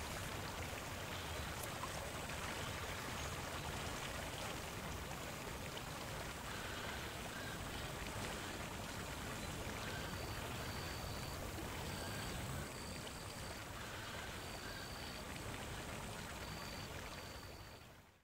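Steady outdoor ambience of a meadow by a forest: an even rushing noise like running water, with short high chirps repeating in small groups from about six seconds in. It fades out at the very end.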